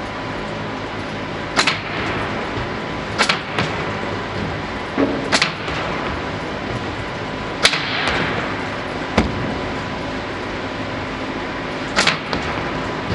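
Odenberg optical sorter on a tomato harvester running with a steady mechanical hum, broken by sharp snaps every second or two as its ejectors fire to reject soil clods from the tomato stream. One snap, a little past halfway, trails off in a short hiss.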